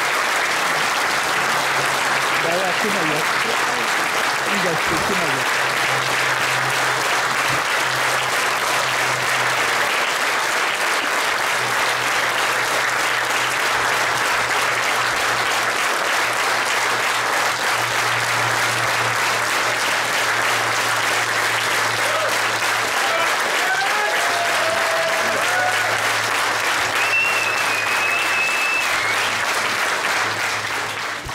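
A large audience applauding steadily at length, with a few voices calling out over the clapping.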